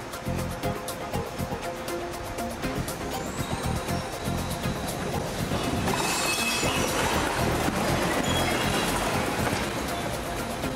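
Garbage truck running as it tips its load of paper and cardboard onto the floor, the spill thickening from about six seconds in, under background music.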